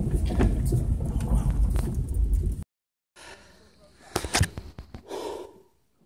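Low rumble inside a car cabin, which cuts off suddenly about two and a half seconds in. After a brief silence come a few faint clicks and a short breath-like sound.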